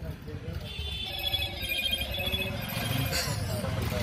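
A mobile phone ringtone: a rapid trilling electronic tone that starts about a second in and stops near three seconds.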